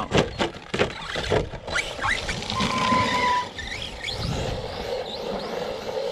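Electric Arrma Mojave 4S RC truck: a run of knocks and clatter in the first second and a half as it tumbles, then its brushless motor whining in short rising revs, with tyres running over grass and dirt.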